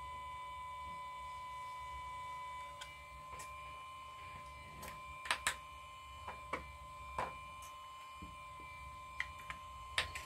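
Light clicks and taps of small metal repair tools and a smartphone being handled and set down on a work desk, several in the second half. A faint steady high-pitched electronic whine runs beneath.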